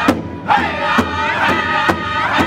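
Powwow drum group singing in high-pitched unison around a large hand drum, the singers striking it together at about two beats a second. The voices drop out briefly just after the start, then come back in over the drum.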